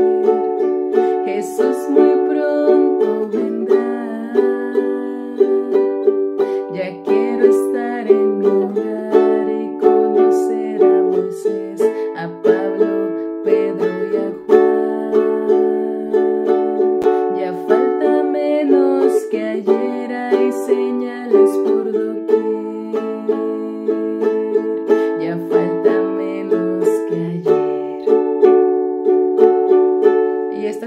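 Ukulele strummed in a steady down-down-up-up-down-up pattern, moving between D, G and A major chords every few seconds.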